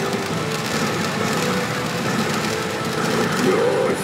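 Steady, loud din of a pachinko hall: many machines' electronic sound effects and music blending into a constant wash of noise, with a brief wavering tone near the end.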